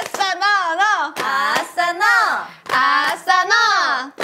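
Several women chanting rhythmically in a hand-clapping game, calling '아싸!' and '너!' in turn, with sharp hand claps between the calls.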